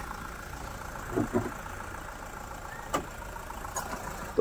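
Maruti Suzuki Ertiga CNG's four-cylinder engine idling steadily under the open bonnet, a low, even hum. A single sharp click comes near the end.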